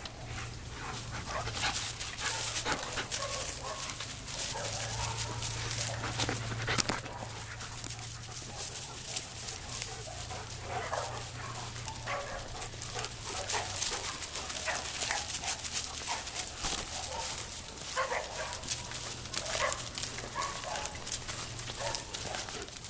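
German Shepherds and the person filming moving through dry leaves and pine straw, with steady crunching and crackling underfoot. Short dog vocal sounds come now and then, most clearly about halfway through and again near the end.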